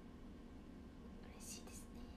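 Near silence with a faint steady room hum, broken about one and a half seconds in by a brief, soft whisper of a woman's voice.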